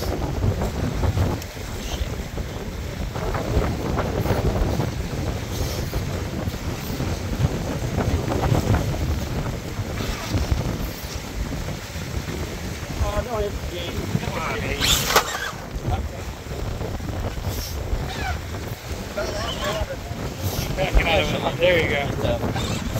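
Strong wind buffeting the microphone: a steady, gusting low rumble with a brief sharp crackle about fifteen seconds in.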